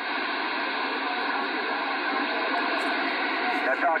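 Radio transceiver's speaker giving a steady hiss of static between transmissions, with a faint voice buried in the noise.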